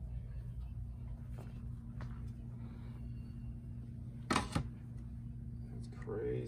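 Steady low electrical hum with a few faint clicks, and one short knock about four seconds in, as a tennis racket is handled and set onto a racket-measuring machine.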